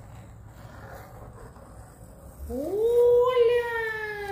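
Faint scratching of a magnetic drawing board's pen as a circle is drawn, then, past the middle, a child's long drawn-out vocal sound that rises, holds and slowly sinks in pitch.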